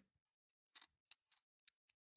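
Near silence, with a few faint clicks of the dishwasher pump's plastic housing parts being handled.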